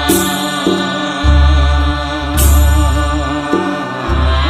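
A Bodo Bathou devotional song (aroz) in a chant-like style: a wavering sung melody over deep bass notes, with a bright crash at the start and another about two and a half seconds in.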